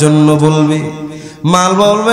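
A man's voice chanting a Bengali sermon line in a melodic, sung style. He holds one long note for about a second before it fades, then starts a new phrase with a rising pitch near the end.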